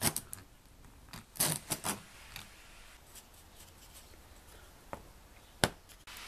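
Hand-cranked egg-beater drill boring into a wooden block: a few short clicking, rasping strokes about a second and a half in, otherwise faint, with a sharp knock near the end.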